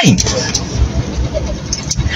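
Steady low rumble with an even hiss over it: a car's running noise heard from inside its cabin.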